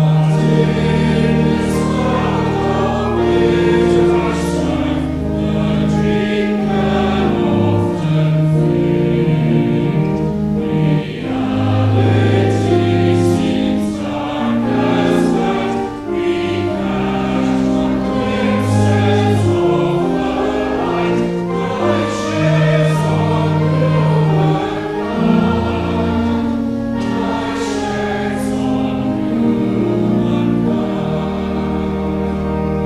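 Church choir singing a hymn with organ accompaniment, phrase after phrase over long held low notes.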